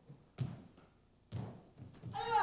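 Two thuds about a second apart: a gymnast's hands and feet striking the gym mats during a round-off into a side flip.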